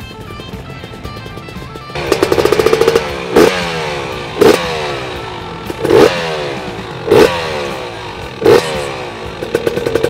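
Husqvarna TE 300 two-stroke dirt bike engine, through an FMF exhaust. It bursts into fast firing about two seconds in. It is then blipped five times in sharp revs, each one falling back toward a rattly idle.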